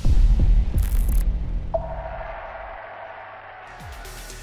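Dramatic soundtrack sting: a sudden deep boom with a low rumble that fades over about two and a half seconds, a short hiss about a second in, and a steady high tone entering just before the middle and dying away.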